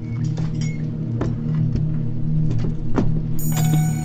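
Soundtrack music: a steady low drone with scattered clicks and knocks over it, and higher sustained tones coming in near the end.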